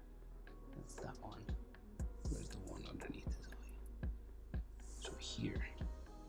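Felt-tip marker scratching and squeaking on paper in short drawing strokes, with soft knocks of the hand against the sheet, over faint background music.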